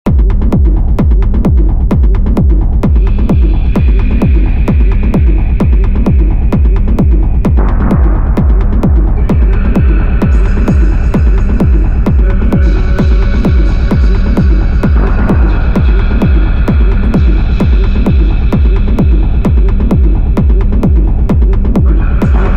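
Dark techno track: a steady four-on-the-floor kick drum at about two beats a second over a heavy, throbbing bass. Higher synth layers come in a few seconds in and thicken around eight and ten seconds in.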